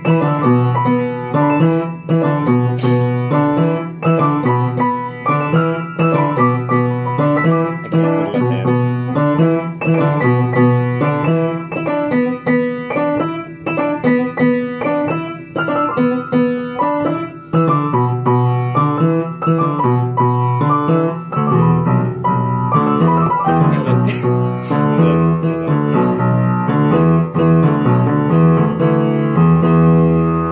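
A keyboard playing a short song, repeating the same phrase of notes over and over. About two-thirds of the way through, the low part gets fuller and busier.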